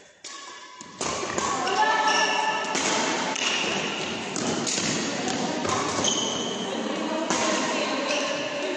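Voices in a large sports hall over the thuds and strikes of a badminton doubles rally, which grow loud about a second in.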